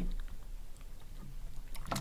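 Quiet room tone with a steady low electrical hum, and a few faint clicks near the end.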